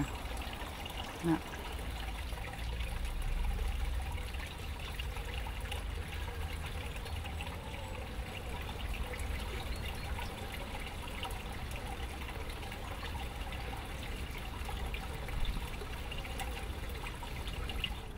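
Water trickling steadily over the lobed basins of a small cascading garden fountain.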